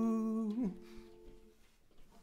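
A long held hummed note closing a song ends about half a second in with a slight dip in pitch, leaving the acoustic guitar's last notes ringing and fading away within another second.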